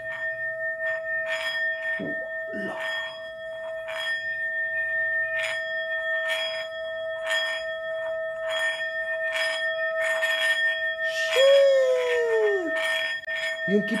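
Brass singing bowl rung by rubbing a wooden mallet around its rim, holding a steady ringing tone with higher overtones, with a faint rasp of the mallet about twice a second. Around eleven seconds in, a single falling, howl-like wail sounds over it for about a second.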